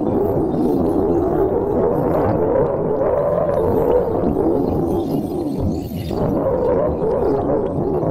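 Background music made of a steady droning sound, dipping briefly about six seconds in.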